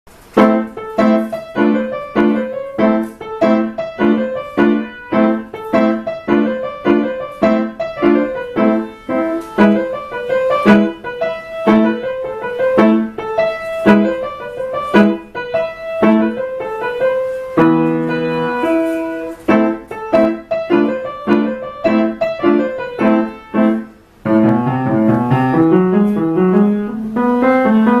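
A Yamaha piano played as a solo piece: evenly paced notes over a repeated bass figure, a chord held for about two seconds about two-thirds through, then, after a brief break, runs of notes climbing in pitch near the end.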